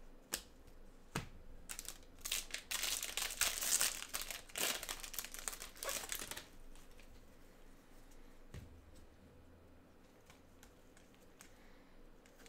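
Foil trading-card pack wrapper crinkling and tearing as gloved hands open it and pull the cards out, for about four seconds starting two seconds in. A few light clicks come before and after.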